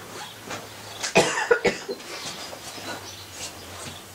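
A person coughing, a quick run of two or three coughs about a second in.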